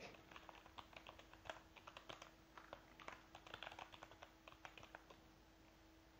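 Faint computer keyboard typing: a quick, irregular run of key clicks.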